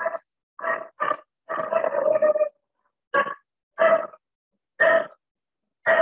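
A voice speaking slowly in short, halting syllables with gaps between them.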